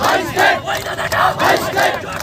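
Crowd of protesters chanting slogans together in short, rhythmic bursts, with hand-clapping in time.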